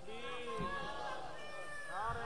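Faint background voices, with short pitched calls that waver up and down, under a steady low murmur.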